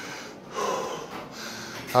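A man breathing hard and straining as he pulls a heavy rep, with a forceful exhale about half a second in.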